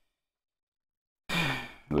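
Dead silence for over a second, then a man's short, audible breath, a sigh or intake of breath, about one and a half seconds in, just before he starts to speak.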